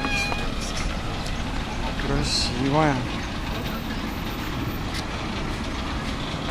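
Steady rumble of street traffic, with a truck among the vehicles.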